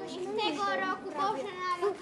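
A child speaking in a high voice, in short phrases.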